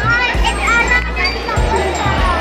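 Many children's voices chattering and calling out over loud music with a deep bass line.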